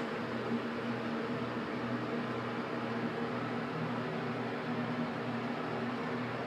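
General hydraulic elevator cab travelling down between floors: a steady hum with a low, even tone and no change in pitch.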